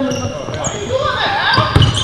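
Basketball bouncing on an indoor court floor during a pickup game, several thumps with the loudest near the end, heard in a reverberant gym alongside players' voices.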